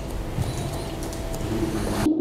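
A steady rushing noise that swells slightly toward the end.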